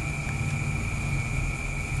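A steady low background rumble with an even hiss and a faint, thin high-pitched whine, with no speech over it.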